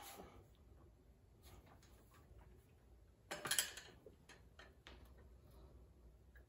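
Faint clicks and light knocks from a Husqvarna 372 XP chainsaw being hung by its handle on the steel hook of a hanging digital crane scale. There is a brief, louder clatter about three and a half seconds in as the saw settles on the hook.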